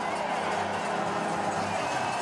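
Steady hissing noise from a giant slalom course during a run: a racer's skis carving on hard, icy snow, heard along with spectators at the piste.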